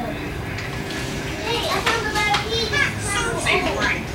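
Children's voices chattering and calling out over a low room background, livelier from about a second and a half in.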